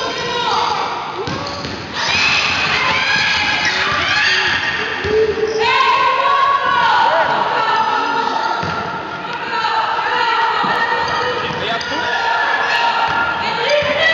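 Basketball game in a gymnasium: the ball bouncing on the court while players and spectators call out, all echoing in the hall.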